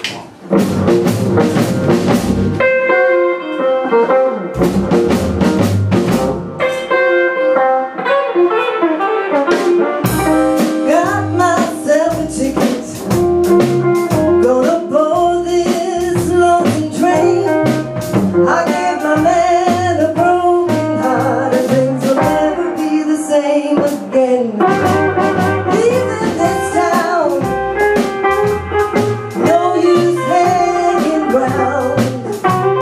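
Live rhythm-and-blues band (electric guitar, upright double bass and drum kit) starting a song with stop-start phrases broken by short gaps, then playing on steadily. A woman's singing voice comes in about ten seconds in.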